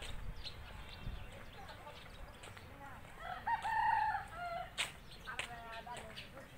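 A bird calling: one loud call of several pitched notes about three seconds in, lasting about a second and a half, then a shorter call near the end.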